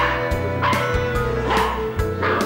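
Background music with a steady beat, over young golden retriever puppies yipping in short bursts as they play-fight.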